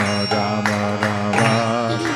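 Kirtan accompaniment between sung lines: a harmonium holding steady reedy chords while a mridanga, the double-headed clay drum, plays sharp strokes several times.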